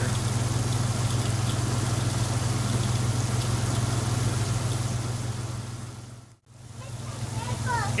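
Truck engine idling with a steady low hum, mixed with water from the heat-exchanger hose running into a bucket. The sound fades out briefly about six and a half seconds in, then comes back.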